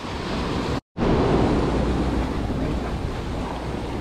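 Ocean surf washing over and around rocks, mixed with wind buffeting the microphone as a steady rushing noise. The sound drops out completely for a moment just under a second in, then carries on.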